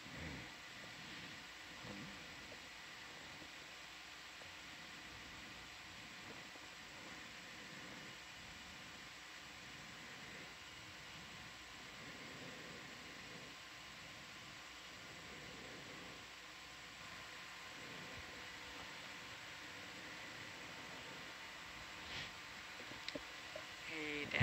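Steady low hiss with faint steady hum tones from an open, idle comms intercom line, with a faint tick shortly before the end.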